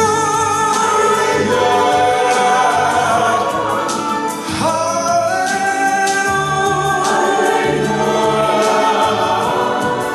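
A choir singing held chords in slow phrases; the sound dips briefly about four seconds in and the next phrase begins.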